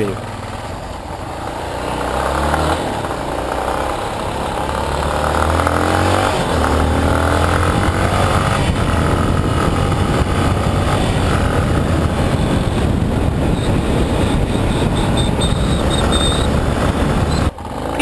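Yamaha XTZ 250 Lander's single-cylinder engine running on the move, with wind and road noise on the helmet camera. It grows louder as the bike picks up speed over the first few seconds, then holds steady.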